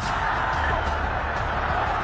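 A single sharp crack of a cricket bat striking the ball, followed by a steady bed of stadium crowd noise.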